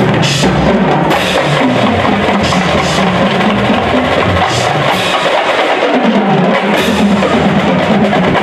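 High school marching band playing, with the drums and percussion prominent.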